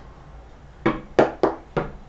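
Tarot cards handled on a wooden tabletop: four short knocks over about a second, starting near the middle, as a card is laid down and the deck is tapped square.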